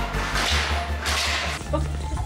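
Slalom skis carving turns on indoor-slope snow: two hissing swishes of the edges scraping through successive turns, over background music with a steady bass line.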